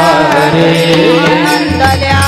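Warkari devotional kirtan singing: women's voices chanting a gliding melody over a steady veena drone, with small hand cymbals (taal). A low beat drops out and comes back near the end.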